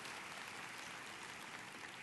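Faint, steady applause from a church congregation.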